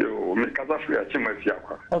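Speech only: a caller talking over a telephone line, cut off in the highs like a phone call.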